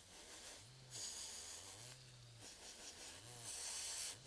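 Electric nail drill with a sanding band working over a natural nail, faint. A low motor hum swells and fades in short spells, with patches of fine hiss as the band runs over the nail.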